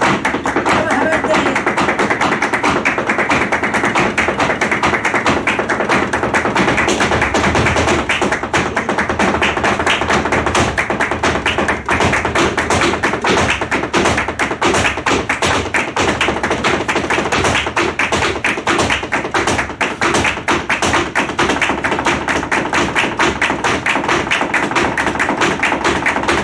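Live flamenco: two flamenco guitars strumming with a singer, palmas hand clapping and the dancer's rapid shoe-tapping footwork on a wooden stage. The strikes of the footwork grow denser and faster about halfway through.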